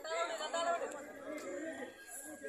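Men's voices talking over one another: loud, close chatter that eases off toward the end.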